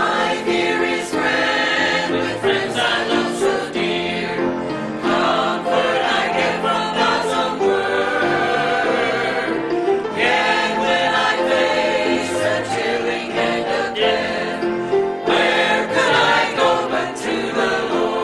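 Mixed church choir of men's and women's voices singing a gospel hymn, in phrases that start afresh every few seconds.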